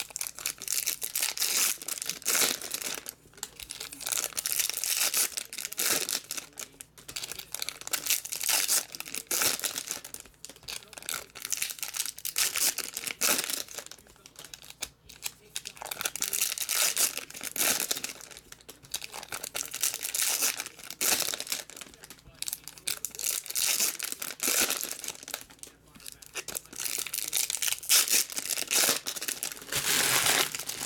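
Foil wrappers of Topps Chrome baseball card packs being torn open and crumpled by hand, a run of crinkling and tearing bursts with short pauses between packs.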